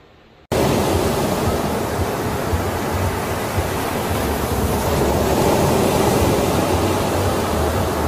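Ocean surf sound effect: a loud, steady wash of breaking waves that cuts in abruptly about half a second in.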